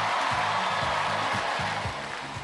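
Backing music with a repeating bass line of short notes, several a second, under a bright hiss-like wash.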